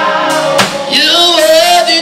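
A man singing a gospel worship song into a handheld microphone over keyboard accompaniment. From about a second in he holds one long note with vibrato.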